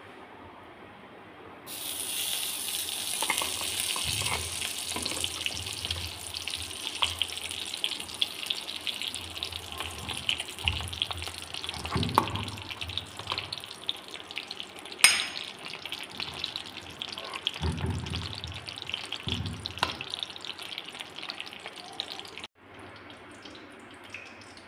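Ghee sizzling and crackling as it melts in a hot pan. The sizzle starts suddenly about two seconds in and cuts off near the end, with several dull knocks and one sharp click midway.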